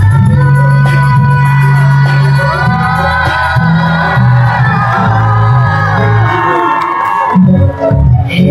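A woman singing live with a band over a loud PA, holding long notes that slide in pitch, with crowd noise underneath; the music dips briefly near the end.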